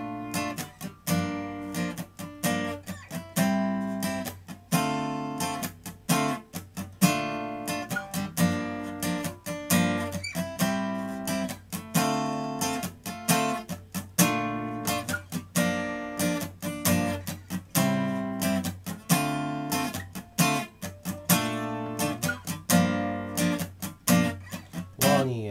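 Gibson J-45 steel-string acoustic guitar strummed in a busy sixteenth-note syncopated pattern, ringing chords (BbM7, Gm7, Am7, Dm7) alternating with muted percussive scratch strokes.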